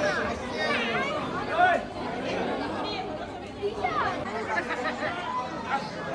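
Several people talking at once: indistinct, overlapping chatter of a group of guests.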